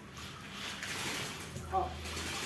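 Damp potting soil and roots rustling and crumbling as a monstera is worked loose and pulled out of a large plastic pot, a steady hissing noise.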